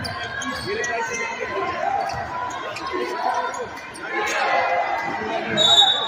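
Basketball being dribbled on a hardwood gym court amid a steady din of crowd voices, with short knocks of the ball and shoes on the floor. A brief high-pitched squeal, the loudest sound, comes just before the end.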